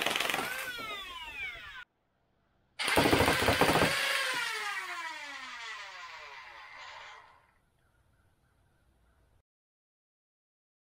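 Electric flywheel motors of a foam-dart blaster revving and then spinning down, a whine that falls steadily in pitch. It is cut off about two seconds in, then revs again about three seconds in and winds down over several seconds until it fades.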